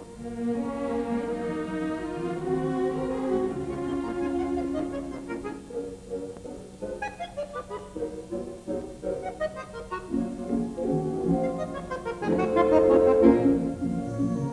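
Bayan (Russian button accordion) playing a fast concerto movement with a symphony orchestra's strings. Sustained chords give way to quick short notes in the middle, building to a louder passage near the end.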